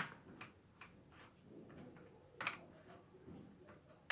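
Faint clicks and light taps of small metal parts being handled on a workbench while a ball bearing is re-greased: a sharp click at the very start, another about two and a half seconds in, and a few faint ticks between.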